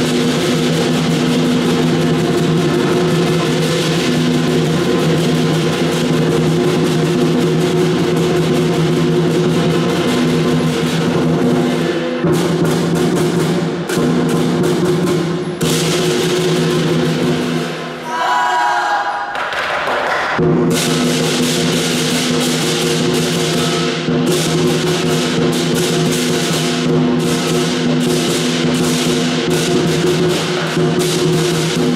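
Southern lion dance percussion: a large Chinese lion drum beaten in fast, dense strokes with clashing cymbals and a ringing gong. About eighteen seconds in, the percussion breaks off for roughly two seconds, and a short rising tone is heard in the gap before the band comes back in.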